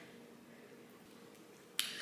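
Quiet handling of a peeled pomelo, then a single sharp snap near the end as the fruit's segments are pulled apart from the pith.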